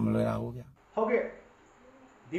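A man speaking Burmese, ending on a long drawn-out syllable, then a short spoken word about a second in, followed by a pause.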